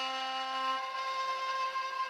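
Kamancheh (Persian bowed spike fiddle) played solo, holding a steady sustained note. A lower tone drops out under it about a second in.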